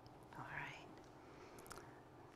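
Near silence, with a brief faint murmur of a voice about half a second in.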